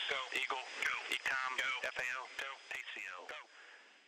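A voice speaking faintly, without music, fading out about three and a half seconds in.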